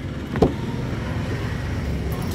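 A single sharp click as a car's door latch releases and the driver's door is pulled open, over a steady low rumble.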